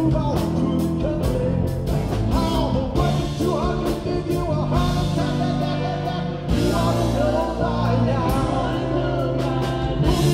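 Live rock band playing a song with a lead singer over piano, electric guitars and drums, with steady drum and cymbal hits.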